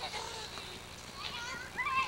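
Voices calling out in the open air, with a high-pitched call, like a child's shout, near the end.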